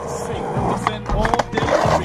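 Skateboard wheels rolling over rough asphalt, getting louder and rougher toward the end as the rider comes off the board onto the pavement.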